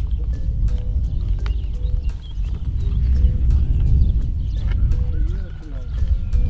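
A horse standing and shifting its feet while a rider mounts, with faint clicks of saddle and bridle tack, over a steady low rumble.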